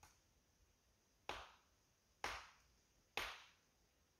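Three sharp knocks about a second apart, each with a short ringing tail: a hammer striking rock.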